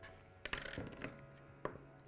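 Faint tool-handling clicks on a paper sewing pattern as a felt-tip marker is set down and scissors are taken up to cut it: a sharp click about half a second in with a short light rustle of paper, and another click shortly before the end.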